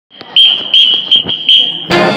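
Four high beeps at one steady pitch, of uneven length, with a few sharp clicks between them. A jazz band's horns and drums come in right at the end.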